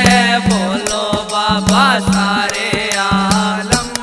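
Haryanvi devotional bhajan (an aarti): a singing voice over a steady held drone, with hand-drum strikes about twice a second.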